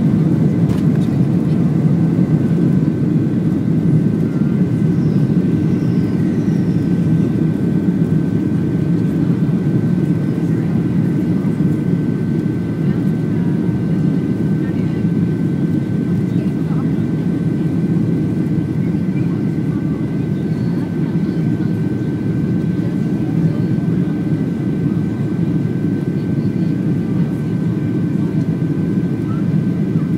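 Jet airliner's engines during takeoff and initial climb, heard from inside the cabin: a loud, steady low roar with a constant high whine over it, easing slightly as the climb goes on.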